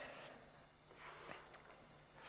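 Near silence: room tone with a faint steady low hum and a couple of faint ticks.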